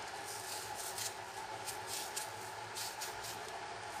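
Faint, irregular crisp scrapes of a kitchen knife blade cutting into a whole raw onion, over a steady low hum.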